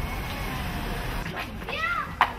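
Steady low background noise, then near the end a short pitched call that glides up and down, voice-like or animal-like.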